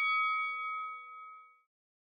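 Round bell ringing out to mark the end of a boxing round: a single bright metallic tone that fades away and is gone about a second and a half in.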